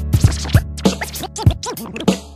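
Hip hop beat with DJ turntable scratching: a run of quick back-and-forth scratches over the drums and bass.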